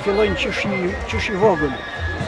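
A man's voice speaking Albanian in short, uneven phrases with a rising and falling pitch.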